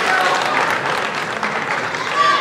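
Spectators and team members applauding in a sports hall, a dense patter of hand claps with a few voices calling out, easing off slightly toward the end.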